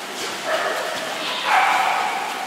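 A dog barking twice, the second bark louder.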